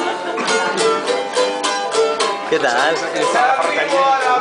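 Acoustic guitar strummed in a quick, steady rhythm as a song begins, with a voice coming in over it about halfway through.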